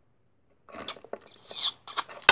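A loud, high, squeaky kissing noise made with the mouth, falling in pitch, about a second and a half in. Soft rustles and taps of small plastic toy figures being handled come before and around it.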